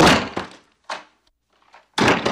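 Heavy blows against a door being hacked open: a loud blow at the start, a smaller knock about a second in, and another loud blow at the end.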